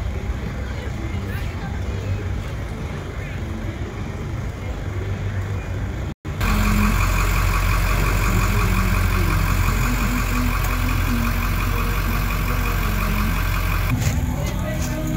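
Indistinct outdoor street sound with distant voices, then, after a sudden cut about six seconds in, a louder steady engine idling on a fire-rescue pickup truck, with a deep hum and a fast, even chatter above it.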